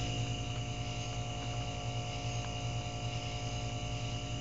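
Steady low electrical hum with a faint hiss and a few faint ticks, from a heater keeping an acid solution of dissolving processor pins at a hard boil in a glass coffee pot.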